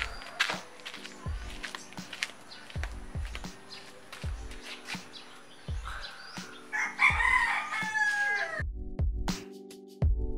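Background music with a slow, steady beat throughout; about seven seconds in, a rooster crows once, loudly, for about two seconds. Just after the crow the outdoor sound cuts off suddenly, leaving only the music.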